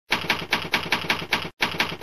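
Typewriter keys clacking in a quick, even run of about five strokes a second, with a brief break about one and a half seconds in.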